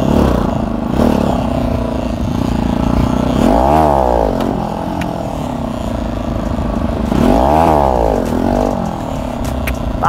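Bajaj Pulsar motorcycle engine running under way, its revs rising and falling twice, once about four seconds in and again near eight seconds.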